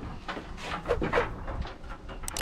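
Weathered wooden plank door being pushed shut, with scrapes and short squeaks about a second in.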